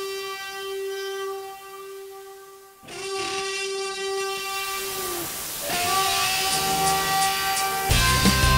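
Steam locomotive whistle sounding two long, steady blasts, the second over a rising hiss of steam and stepping up in pitch about six seconds in.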